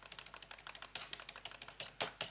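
Faint, quick run of key clicks: keys being pressed repeatedly to step through presentation slides.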